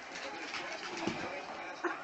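A dog's brief, faint low grunts over a quiet room background.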